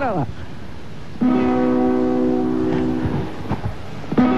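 A single strummed guitar chord about a second in, ringing for about two seconds and fading: one stroke of the midnight chimes, played as a dry guitar strum in place of a bell. The next identical strum follows about three seconds later.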